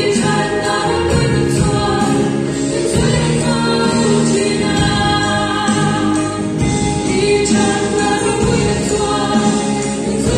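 A small group of young women singing a song together into microphones, several voices at once.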